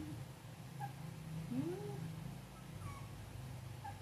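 Young puppies whimpering: a few short, thin whines, one sliding upward about halfway through, over a low steady hum.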